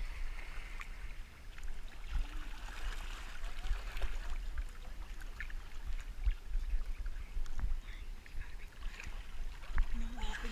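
Swimming-pool water sloshing and lapping against a camera at the waterline, with small splashes and drips ticking throughout and an uneven low rumble.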